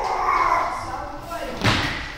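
A person's voice for the first second or so, then a single heavy thud about a second and a half later as feet land on the gym floor after dropping from gymnastic rings.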